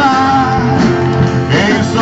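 Live song: a man singing to a strummed acoustic guitar, with a long held sung note at the start and a new sung phrase near the end.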